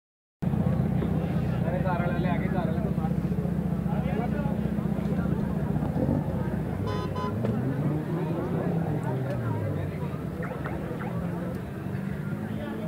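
A motor vehicle's engine running with a steady low hum, its pitch wavering up and down in the second half, under people talking. A brief high tone sounds about seven seconds in.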